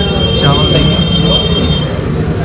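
Busy eatery background: people talking over a steady low rumble, with a thin high-pitched whine that cuts off near the end.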